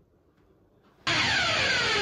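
About a second of near silence, then an intro sound effect for a channel logo starts suddenly: a loud, dense sound with many tones falling in pitch.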